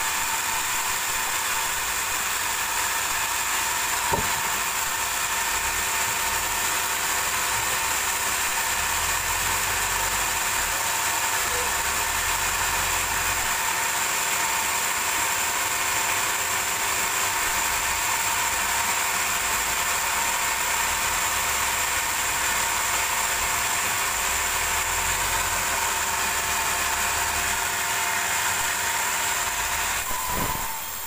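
Band sawmill running steadily with no wood in the cut: a constant high whine over a low hum. A single short click about four seconds in.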